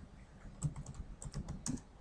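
Typing on a computer keyboard: a quick, irregular run of light key clicks starting about half a second in.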